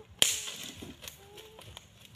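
A dry stick snapping with a sharp crack just after the start, followed by a brief rustle of dry fallen leaves as sticks are pulled from the leaf litter, with another rustle at the end.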